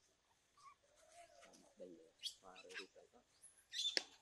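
Faint animal calls: a few short pitched calls, then sharp high chirps, the loudest just before the end.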